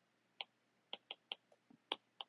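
A stylus tip tapping on a tablet screen while writing: about six faint, short clicks, irregularly spaced.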